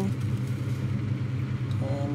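Steady low hum, with a faint click about 1.7 seconds in.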